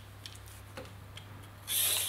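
Y-shaped vegetable peeler scraping down a raw daikon radish: one peeling stroke near the end, with a few faint clicks before it.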